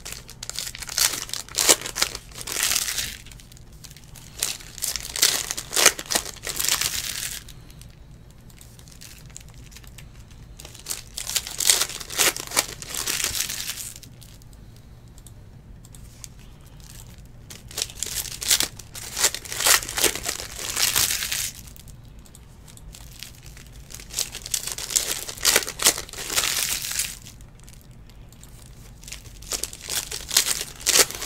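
Foil wrappers of Panini Select football trading-card packs crinkling and tearing as the packs are ripped open by hand. The sound comes in repeated bursts of a few seconds each, with quieter pauses between them.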